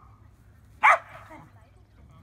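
A dog barks once, a single loud, sharp bark about a second in.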